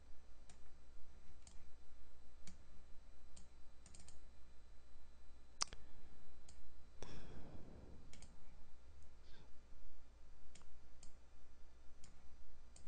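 Quiet, scattered computer mouse clicks, one every half second to a second, with a sharper click a little before the middle, followed by a brief soft rush of noise.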